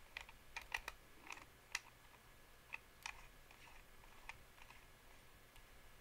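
Faint, scattered clicks and taps of fingers and fingernails handling a rebuildable dripping atomizer, working its top cap and center barrel off. The clicks come thickest in the first three seconds, then thin out.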